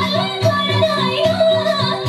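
Nepali Teej dance song: a woman singing a bending melody over a steady drum beat.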